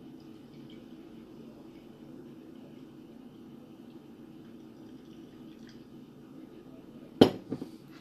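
Mango wheat ale pouring steadily from a glass bottle into a drinking glass, then a sharp knock near the end.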